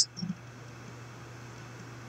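Faint steady hiss with a low hum underneath: the recording's background noise in a pause between spoken lines, with one small brief sound just after the start.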